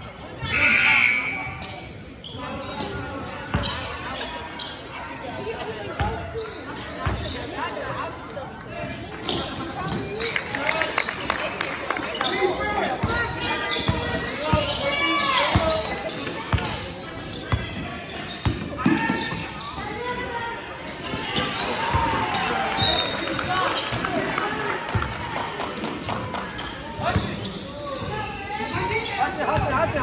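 Basketball dribbling on a hardwood gym floor amid players' and spectators' voices, all echoing in the gym. A short, loud sound about a second in is the loudest moment.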